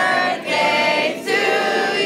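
A group of people singing together with several voices in unison, holding long notes.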